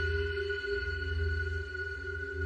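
Tense ambient film score: steady held tones over a low droning rumble.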